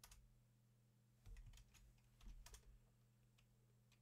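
Faint computer keyboard keystrokes: a few separate key presses, one at the start, a small cluster about a second and a half in and another about two and a half seconds in, over a faint steady low hum.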